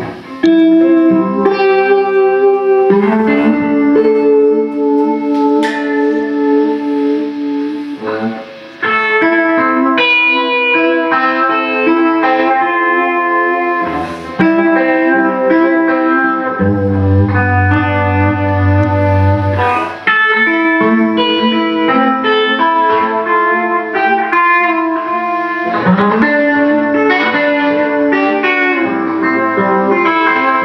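Electric guitar, a Fender Stratocaster, played through fuzz and Gypsy-Vibe (Uni-Vibe-style) modulation into an amplifier: sustained chords and single-note lead phrases, with a low note held for a few seconds past the middle.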